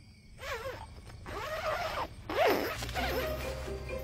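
A tent's door zipper being unzipped in about three quick pulls. Soft background music comes in near the end.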